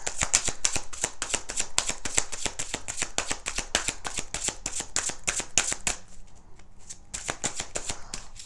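A tarot deck being shuffled by hand, overhand-style: a quick run of light card clicks, several a second, that thins out for about a second near the six-second mark before picking up again.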